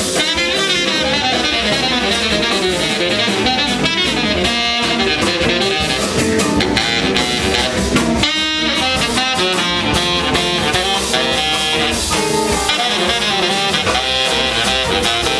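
Live soul-jazz band: a baritone saxophone plays the lead line over Hammond-style organ, electric guitar, bass and drum kit, at a steady, loud level.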